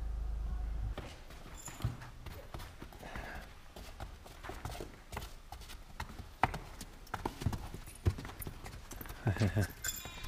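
Hooves of saddled donkeys clip-clopping irregularly on rock-cut stone steps as they come down, with a quick cluster of louder strikes near the end.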